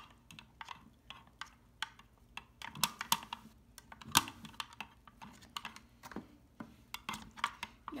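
Quick, irregular plastic clicks and taps as a small plastic scooper is stirred and knocked around inside a plastic toy toilet bowl, with a couple of louder knocks about three and four seconds in.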